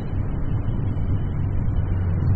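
1982 Yamaha XJ1100 Maxim's inline-four engine running steadily at cruising speed, with road and wind noise on the helmet-mounted microphone.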